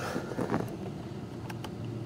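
Quiet steady background hiss with a few faint, light clicks from hands picking up and handling a small trim screw.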